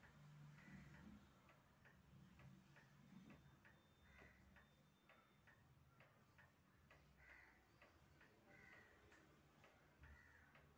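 Near silence: quiet room tone with a steady low hum and a faint, regular ticking.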